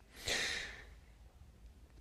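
A man's single breathy exhale, a short sigh-like rush of air lasting about half a second and fading out, followed by a quiet pause.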